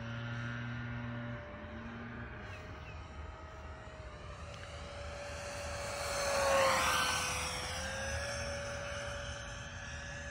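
A 64 mm electric ducted fan in a foam RC F-117 jet, whining steadily in flight as the plane makes a low pass. The rush swells to its loudest about seven seconds in, the pitch dips slightly as it goes by, then it fades.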